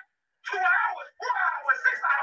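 A voice from an archived recorded lesson, its words unclear. It starts about half a second in, with a short break just past the middle.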